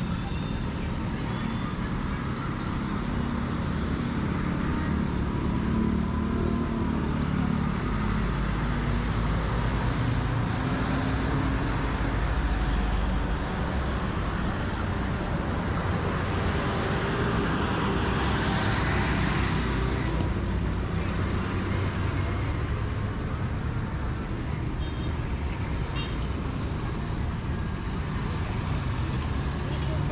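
Roadside traffic: motorcycles, tricycles and cars running along the road, with a steady engine rumble. One vehicle passes close a little past halfway.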